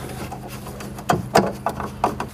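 A screw being turned by hand into the metal guide channel of the corner organiser's frame, giving a few sharp clicks and scrapes, most of them in the second half.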